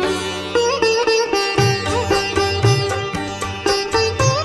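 Instrumental music from a Bengali song: a plucked string melody with notes that bend in pitch, over a steady low drum beat.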